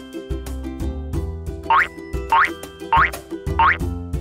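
Upbeat children's background music with a steady beat, with four quick rising whistle sound effects, evenly spaced in the second half.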